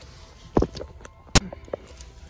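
Two sharp knocks about three quarters of a second apart, the second the louder, with a few fainter clicks around them, as a phone is handled and moved about inside a car.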